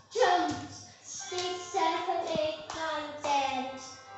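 A child singing the counting song over its backing music, with a few short hand claps among the phrases.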